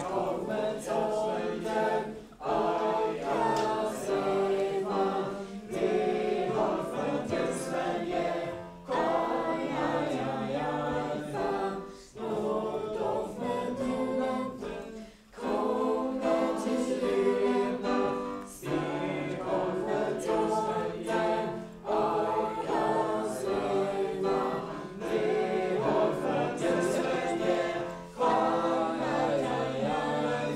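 A group of voices singing a Swedish Christmas song together, phrase after phrase with short breaks between.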